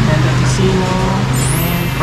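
A steady low motor hum, like an engine running nearby, with people talking in the background.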